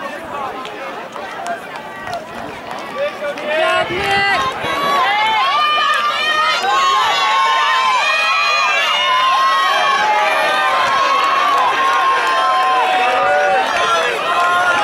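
Spectators yelling and cheering for distance runners, many voices overlapping. The shouting grows much louder about four seconds in and stays loud.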